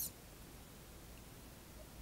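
Faint room tone: a steady low hum under an even hiss, with no distinct sounds.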